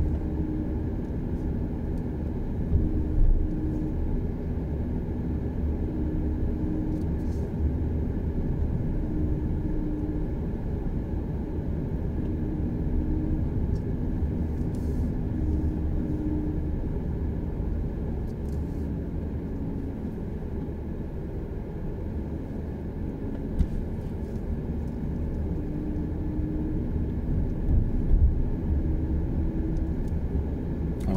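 Car cabin noise while driving on a city road: a steady low rumble of tyres and drivetrain heard from inside the car.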